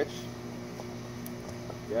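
Steady low mechanical hum of several even tones that holds without change.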